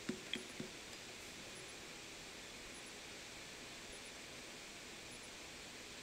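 Three faint computer mouse clicks in the first second, then steady faint room hiss.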